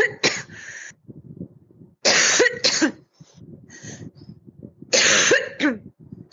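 A person coughing in three short bouts, about two and a half seconds apart, each bout made of two or three harsh coughs.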